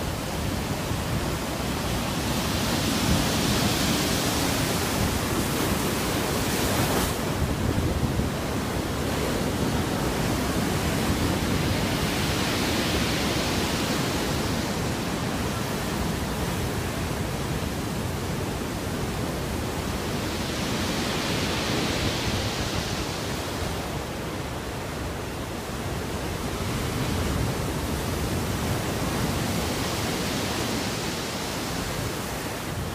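Heavy storm surf breaking on a stony shore and concrete breakwater: a continuous wash of churning, foaming water that swells louder about every nine seconds as each big wave comes in.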